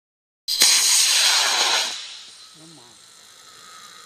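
Aerotech H128W composite model-rocket motor firing at launch: a loud rushing hiss that starts abruptly about half a second in, then fades away over the next second and a half as the rocket climbs off.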